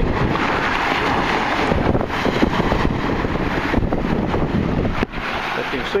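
Steady rushing of wind on the microphone mixed with surf at the shoreline, dipping sharply about five seconds in.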